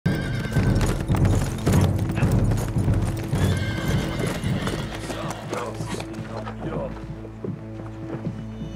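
Hoofbeats of two ridden horses on a packed dirt track, thick and loud for the first four seconds or so and then thinning out, over a dramatic music score with steady held notes.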